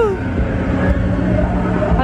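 Low rumble of a motor vehicle's engine, with a steady hum in the second half.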